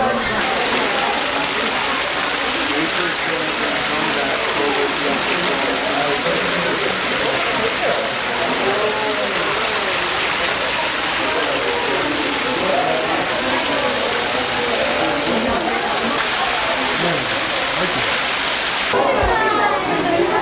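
Small rock waterfall splashing steadily, an even rushing of falling water, with indistinct voices of people in the background. About a second before the end the water fades and the voices come forward.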